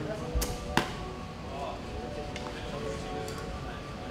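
Faint background music in a large room, with two sharp clicks close together in the first second.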